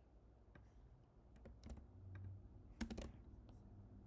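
Faint typing on a computer keyboard: scattered single keystrokes, with a louder cluster of keystrokes about three seconds in.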